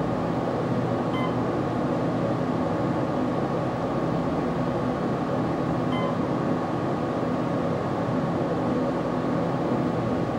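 Otis hydraulic elevator car travelling upward: a steady, smooth hum from the hydraulic pump and car ride, sounding healthy. A short, faint electronic beep sounds twice, about a second in and again about six seconds in as the floor indicator changes to 2.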